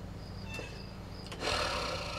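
Low steady hum, then about a second and a half in a soft, even hiss of a person breathing in before speaking.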